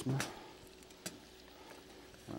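A single light knock about a second in as a cheese grater and block of cheese are picked up on the counter. Otherwise there is only quiet room tone with a faint steady hum.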